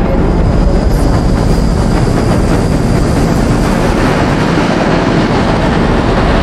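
Kling 2.6 AI-generated soundtrack for a sci-fi attack scene: a loud, dense, steady rumble of an approaching fleet of airborne craft.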